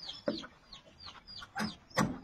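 Chickens chirping in short, repeated falling calls, several a second, while a claw hammer strikes a nail into a wooden beam, with two sharp blows near the end.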